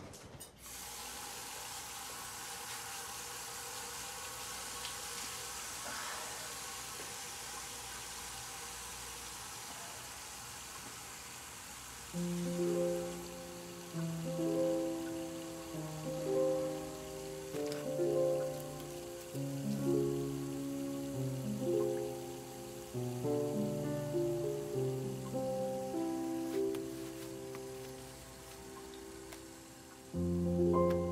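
Steady running water, a tap or shower, starts suddenly at the beginning and runs for about twelve seconds. Slow keyboard music with held notes then comes in and continues.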